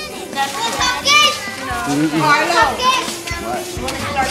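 Children's high-pitched voices and adult chatter overlapping, with a lower adult voice about two seconds in.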